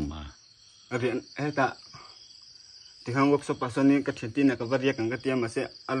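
Crickets keep up a steady high-pitched chirring throughout, under a man talking in two stretches, about a second in and from about three seconds on.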